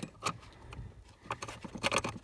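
Small metal and plastic clicks and rattles as a parking-brake warning switch is worked into place on the pedal assembly's ratchet bracket: one at the start, another a quarter second later, then a quick cluster of clicks near the end.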